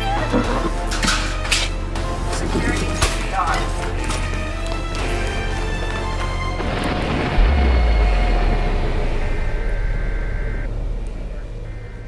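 Horror trailer score: tense music over a low drone, with a rapid string of sharp hits, then a deep boom about seven seconds in that slowly fades away.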